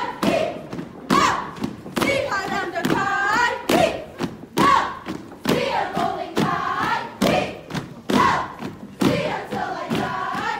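A line of women stomping together about once a second while chanting in unison between the stomps.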